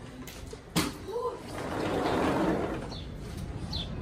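A sliding balcony door being opened: a sharp click about a second in as it is unlatched, then a swelling rush of sound for about a second and a half as the door slides open and outside air comes in.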